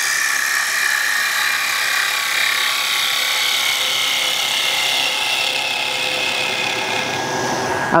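Bowl gouge cutting into the inside of a small wooden bowl spinning on a lathe: a steady shearing noise as shavings are taken off, which stops near the end.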